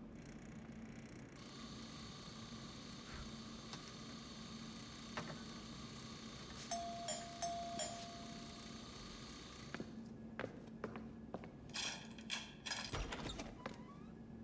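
An electric doorbell rings with a steady buzzing tone for about two seconds, past the middle, over a steady background hum. It is followed by a run of clicks and rattles as the front door's lock and latch are worked open.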